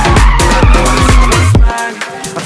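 Electronic dance music with a steady, fast kick-drum beat, mixed with a car's tyres squealing as it slides. The bass drops out near the end.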